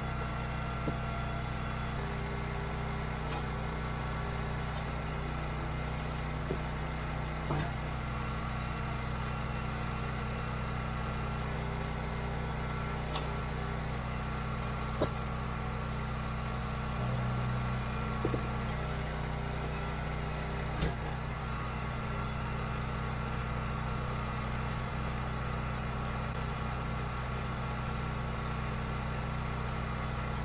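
Wolfe Ridge 28 Pro log splitter's small gas engine running steadily, with a few sharp cracks and knocks from the wood being split. About 17 seconds in the engine note swells briefly as the ram pushes a round through the wedge under load.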